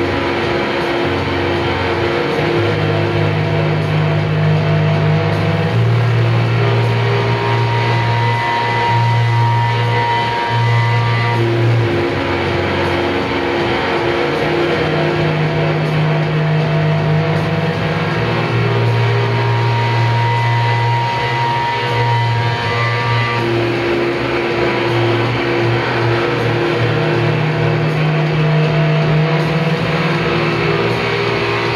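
Live rock band playing loud: electric guitars, bass and drums, the same chord progression coming round about every twelve seconds.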